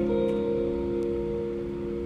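Live band's guitar and bass holding a chord that rings and slowly fades, with a new note played just after the start and no drums.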